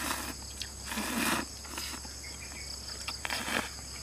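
A person slurping instant noodles in three short noisy slurps, with a few small clicks of chopsticks against the bowl, over a steady high chirring of insects.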